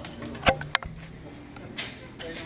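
A steel lug wrench clicking on a car's wheel nuts as they are tightened: a sharp click about half a second in, the loudest sound here, and a second click a quarter second later.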